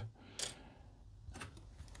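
Faint clicks of plastic model kit parts being handled and set down on a cutting mat: one sharp click about half a second in, then a couple of softer knocks.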